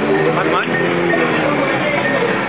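Loud music with a voice over it, played through a street promotion loudspeaker advertising Thai boxing fights.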